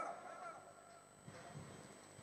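A pause in amplified speech: the voice's tail fades out over about half a second, leaving faint room tone with a thin high hum.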